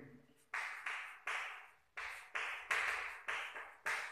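Chalk writing on a blackboard: a run of about eight short scratchy strokes, each starting sharply and fading, with brief pauses between them.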